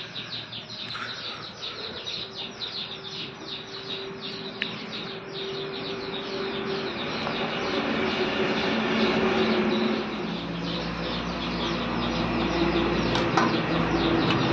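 Birds chirping with rapid, repeated falling calls; from about halfway a low, steady hum like a passing engine rises and gets louder toward the end.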